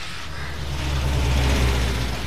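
A road vehicle's engine rumbling over street traffic noise, swelling to its loudest about a second and a half in and then easing off.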